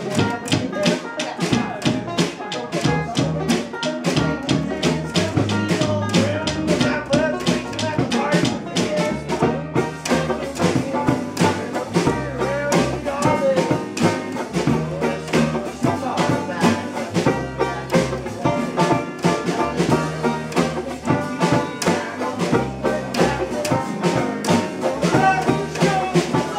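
A live acoustic band playing: a banjo picked in a quick, steady rhythm over a plucked upright double bass line.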